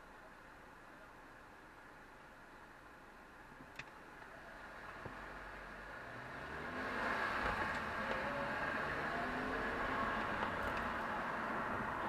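Car pulling away from a standstill, heard from inside: quiet at first, then engine and tyre noise build over a few seconds as the engine pitch rises, and hold steady once under way. A single sharp click sounds just before it moves off.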